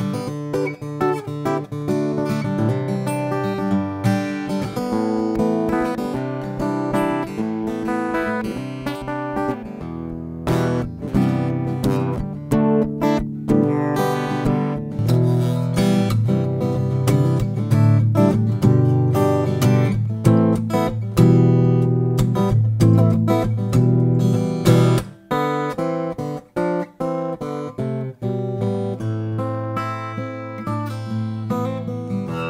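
RainSong Black Ice acoustic guitar, a carbon-fibre (graphite) body, played solo: chords strummed and picked. There are a few short breaks in the playing near the end.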